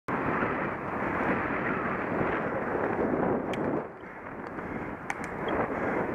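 Wind buffeting the microphone of a camera on a moving bicycle: a steady rushing noise that eases briefly about four seconds in, with a few light ticks.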